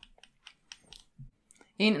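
A pause filled with a handful of faint, short clicks and ticks, spread unevenly over about a second and a half, then a woman starts speaking near the end.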